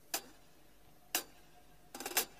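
Two sharp clicks about a second apart: drumsticks struck together in a drummer's count-in before the band starts.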